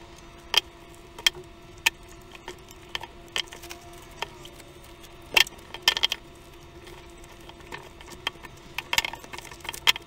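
Plastic cling film crackling and crinkling as it is pulled from the roll and wrapped tightly around a fish fillet. The crackles come irregularly, with a few sharper, louder ones.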